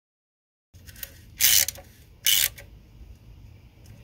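Ratchet wrench giving two short, loud runs of rapid clicks, a little under a second apart, as it is swung back between pulls while snugging the valve cover bolts.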